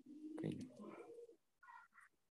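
A faint, low cooing call of a bird, loudest about half a second in.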